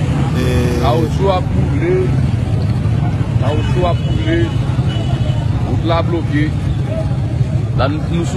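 A large vehicle's engine, most likely the truck beside the container, runs at a steady idle, a constant low rumble, with scattered voices of a crowd over it.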